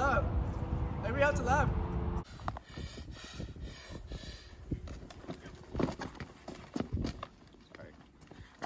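A steady low mechanical hum with a brief voice or two, cutting off about two seconds in. Then quieter footsteps on asphalt, a few scattered steps near the end.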